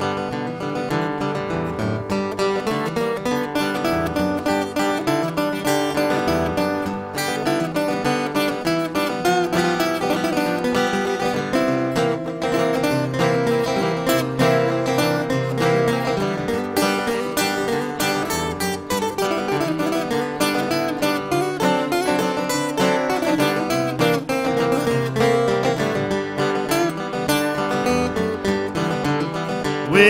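Two acoustic guitars playing an instrumental break in a blues song, picked and strummed without vocals.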